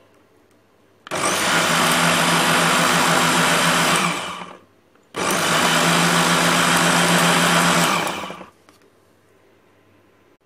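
Electric mini chopper running in two bursts of about three seconds each, blending a runny mixture. Each burst starts abruptly and winds down as the motor stops.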